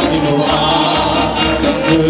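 Marcha popular song: a group of voices singing together over instrumental accompaniment.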